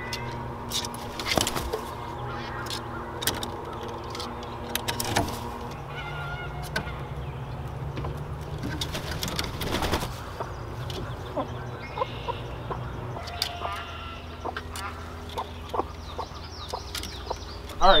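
Farm poultry calling: scattered short calls, some honks and quacks, over a steady low drone.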